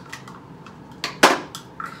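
Measuring cups clattering as they are handled, with one sharp, loud clack about a second and a quarter in and a few lighter clicks around it.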